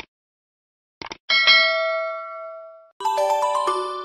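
Subscribe-button sound effect: a few mouse clicks, then a single bright bell ding that rings out and fades over about a second and a half. About three seconds in, a chiming melody of bell-like notes begins, changing note about twice a second.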